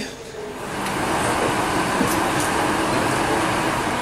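Steady rushing noise of an airliner cabin's air conditioning, starting about a second in.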